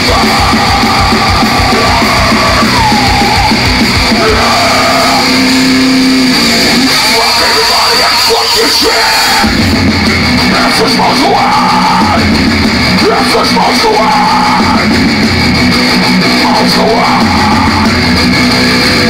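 Thrash metal band playing live: distorted electric guitars, bass and drums with shouted vocals. The low end thins out about seven seconds in and the full band comes back in heavily about two seconds later.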